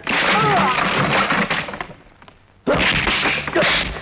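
Wooden folding chairs crashing and clattering as a body is thrown into them, in two loud bouts about a second and a half long, with a brief shout during the first.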